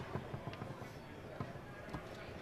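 Foosball being played: a sharp clack as the ball is struck at the start, then a few lighter knocks of the ball and plastic men against the rods and table, over faint background noise.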